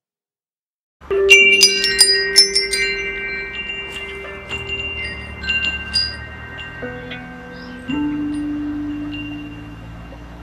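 Metal-tube wind chime ringing: a flurry of strikes about a second in, then sparser strikes whose high tones ring on and fade. Lower sustained tones sit underneath, and a new low note comes in about eight seconds in.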